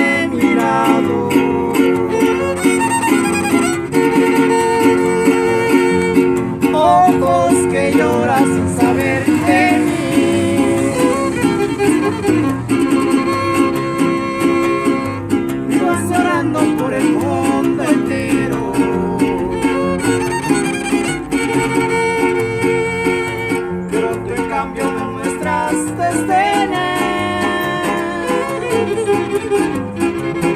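Trio huasteco playing an instrumental passage of a huapango: violin melody over the strummed rhythm of a small jarana huasteca and a large huapanguera guitar.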